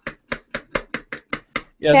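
Bodum hand-pumped milk frother: the plunger worked rapidly up and down, giving a sharp tap with each stroke at about five a second, whipping air into hot milk.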